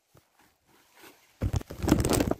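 Near silence, then about one and a half seconds in a short run of knocks and rustles from handling.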